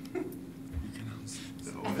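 Soft, breathy laughter and breaths over a steady low hum, with a voice starting again just before the end.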